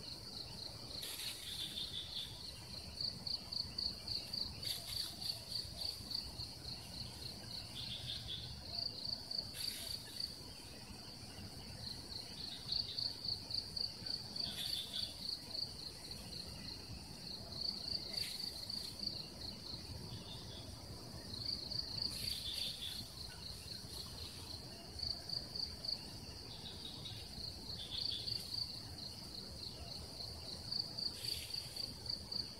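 Insects chirping in a high-pitched, rapidly pulsed trill that comes in repeated phrases a second or two long, separated by brief pauses.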